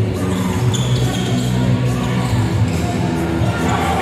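A basketball bouncing on the hardwood court of an indoor arena during live play, heard over a steady low background of sustained tones.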